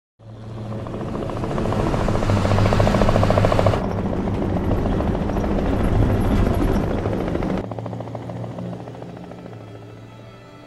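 Helicopter flying, its rotor chopping rapidly over a steady low engine hum; the sound cuts in suddenly, changes abruptly about four seconds in and again near eight seconds, then fades.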